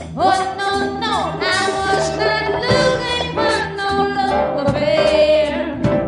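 A woman singing live, her voice sliding between notes, over a symphony orchestra's sustained accompaniment.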